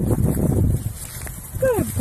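Rustling in dry grass with wind buffeting the microphone, then about one and a half seconds in a brief dog whimper that falls in pitch.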